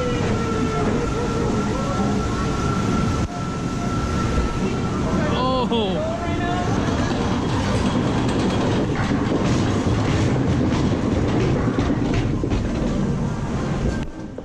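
Log flume boat being carried up a chain-driven lift ramp: a steady mechanical clatter from the lift chain mixed with water running down the flume, with scattered clicks.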